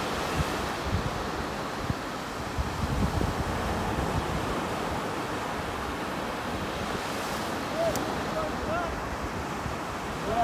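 Steady wind buffeting the microphone over the wash of ocean surf breaking along the beach.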